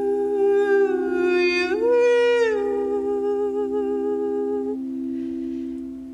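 Singing bowls ringing in a steady drone while a singer holds a long wordless vocal tone over them. The voice slides up in pitch about two seconds in, settles back down, and drops out about five seconds in, leaving the bowls ringing on their own.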